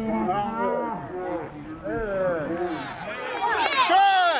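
Several voices shouting over one another during a rugby ruck. Some calls are long and drawn out, and the loudest shouts come near the end.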